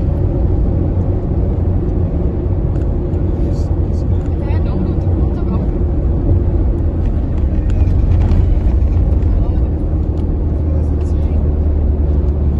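Steady low rumble of engine and road noise inside a moving car, with a faint steady hum, and faint voices in the cabin now and then.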